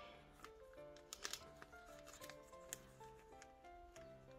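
Faint background music, a slow melody of held notes. Over it come a few soft clicks and crinkles of a card being slid into a clear plastic binder sleeve pocket.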